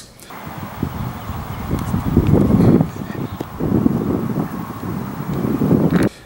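Wind blowing across an outdoor microphone: an uneven low rumble that swells and drops.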